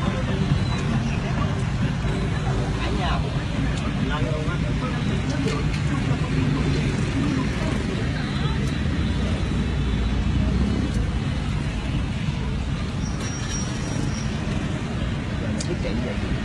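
Steady low rumble of a car heard from inside the cabin, with street traffic outside. A brief high beep comes near the end.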